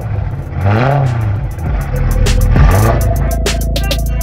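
BMW M3's V8 engine just after a cold start, revving up and down a few times in rising and falling sweeps before settling to a steady run. Music comes in near the end.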